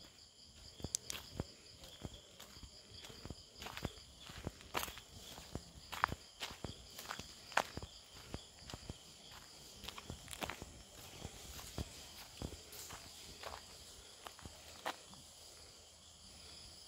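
Footsteps on a dirt path, an uneven series of short crunching steps, over a steady high chorus of crickets.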